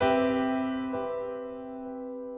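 GarageBand's Steinway Grand Piano software instrument playing a chord that rings and slowly fades, with a soft further note about a second in. Its tone is washed with delay, ambience and reverb for a lo-fi feel.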